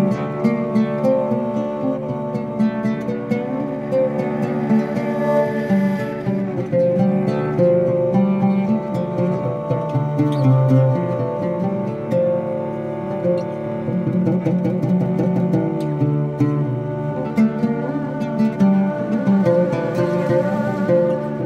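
Live ensemble music: an oud plucked in quick runs of notes over held tones from cellos and other bowed strings.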